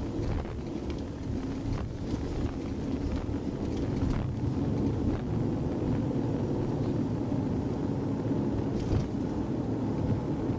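Steady low rumble of a moving police car's engine and tyres, heard from inside the cabin, with a faint steady hum running under it.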